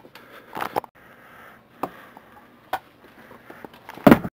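Wooden cane striking, several sharp knocks spaced roughly a second apart.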